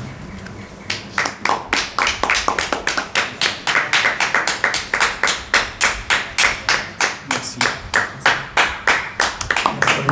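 Hands clapping in a steady, even rhythm, about three claps a second, starting about a second in.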